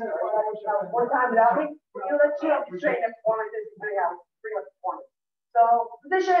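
A person's voice talking in a room, the words unclear, with short pauses about two seconds in and near the end.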